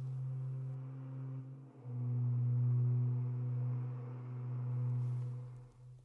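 Soft ambient background music: a low, sustained drone note with overtones. A new note comes in about two seconds in, swells, and fades away just before the end.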